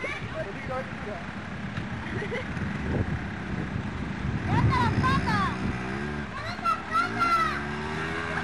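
A quad bike's engine revving, its pitch climbing over the last few seconds, with high children's shouts over it.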